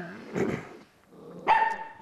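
A dog barking twice: a rough bark about half a second in and a sharper, higher one near the end.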